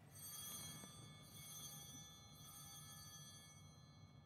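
Altar bells rung once at the elevation of the chalice: several bright, high tones that start together and fade slowly.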